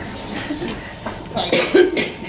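People in the room laughing, ending in a short, loud, cough-like burst about a second and a half in.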